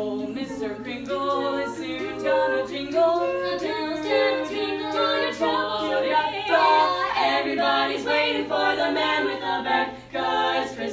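A mixed a cappella group of six young voices singing in close harmony, with a short break in the singing just at the end.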